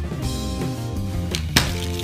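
Background music with steady held notes. About a second and a half in comes a single sharp click as the plastic arrow of the game's spinner is flicked.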